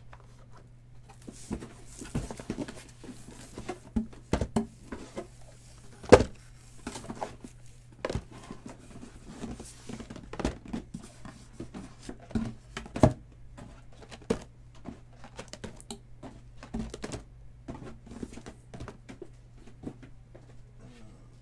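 Shrink-wrapped cardboard boxes of trading cards being handled and set down on a table mat: irregular knocks and taps with crinkling plastic wrap, the loudest knock about six seconds in, over a steady low hum.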